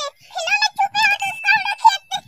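A child talking in quick, very high-pitched bursts, the voice shifted up in pitch so it sounds processed and squeaky. A faint steady high tone comes in about halfway through.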